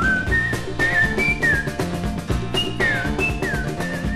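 A whistled melody, one clear tone in short phrases with downward slides in the second half, over a New Orleans rhythm-and-blues band playing with a steady beat.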